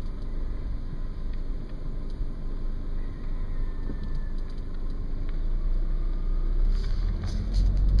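Car interior noise while driving: a steady low rumble of engine and tyres on the road, heard inside the cabin, with a few light clicks near the end.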